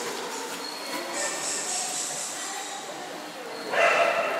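Echoing indoor swimming-pool noise of splashing water and voices. A sudden loud, voice-like call comes near the end.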